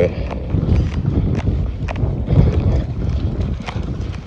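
Wind buffeting a phone's microphone as it is carried outdoors: a loud, uneven low rumble, with scattered light clicks and knocks from handling.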